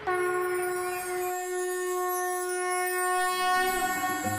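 A conch shell (shankh) blown in one long, steady note that starts abruptly and tapers away near the end.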